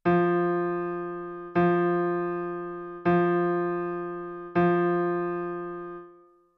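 A single electric-piano-like keyboard note struck four times at an even pulse, about one and a half seconds apart, each ringing and dying away before the next. The notes sound the two equal beats of the subdivided beat in a polyrhythm demonstration.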